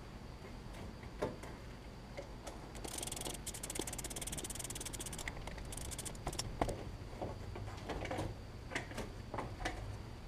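Hand work in a car's engine bay: scattered light clicks and knocks, with a couple of seconds of rapid fine ticking starting about three seconds in.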